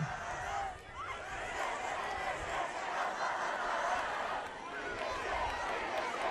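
A large outdoor rally crowd, heard faintly: a steady hubbub of many voices with scattered calls rising out of it.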